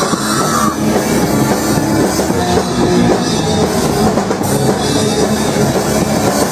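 Punk rock band playing loud and fast through a live club PA, with the drum kit and cymbals driving, recorded from within the crowd.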